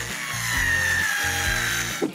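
Cordless drill driving a screw through a metal hinge into wood, its motor whine steady and sinking slightly in pitch, over background music with a steady beat.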